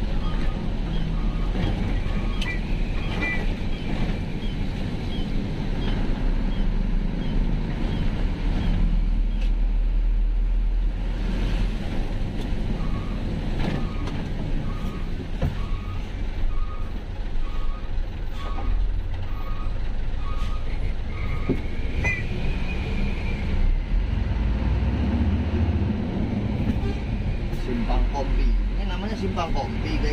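Truck engine and road noise heard inside the cab while driving. A repeating electronic beep sounds about three times every two seconds in two runs, one at the start and one in the middle, and a short higher tone comes near the end.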